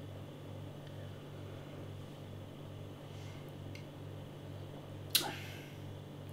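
Quiet room tone with a steady low hum, with one short sharp sound about five seconds in.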